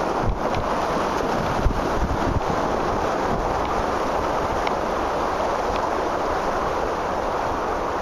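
Rushing river rapids around an inflatable kayak: a steady wash of moving water mixed with wind buffeting the microphone, with a few low thumps in the first two and a half seconds.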